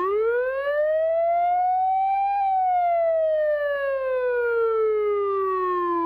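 A siren-like wail sound effect: one long pitched tone that rises for about two and a half seconds, then slowly falls back down. It is a comic sound effect mocking a wrong answer.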